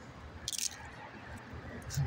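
A person biting into a taco and chewing close to the microphone, with one short sharp bite sound about half a second in.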